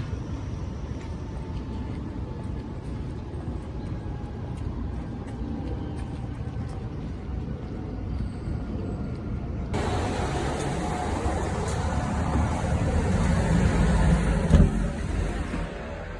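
City street traffic noise: vehicles running past on the road, steady at first, then growing fuller and louder in the last few seconds to a peak shortly before the end.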